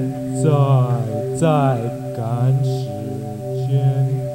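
A steady held music chord with a voice over it making three drawn-out cries that slide down in pitch.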